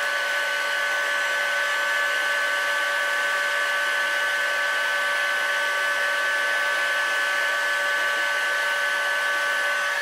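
Electric heat gun running steadily with a constant whine over a rush of air, blowing hot air onto an aluminum crankcase to expand it before a ball bearing is pressed in.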